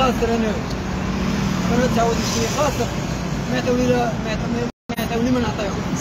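A man speaking over steady city street traffic noise, with passing cars and a bus. All sound cuts out briefly about three-quarters of the way through.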